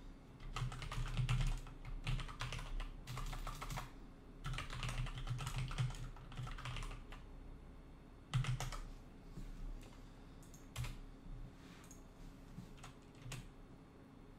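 Computer keyboard keys clicking in several quick runs of typing through the first seven seconds, then a few scattered single clicks.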